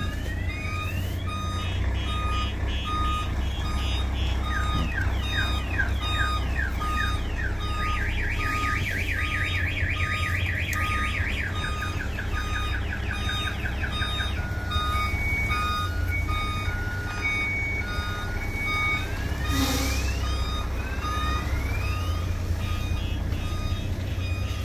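A tractor-trailer's reversing alarm beeping at a steady pace, mixed with rapid rising electronic chirps, heard from inside the cab while the truck backs up. Under it is the low, steady running of the truck's diesel engine.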